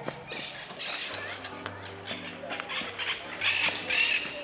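Backing music with held low notes and sharp percussion hits, the notes changing about a second in.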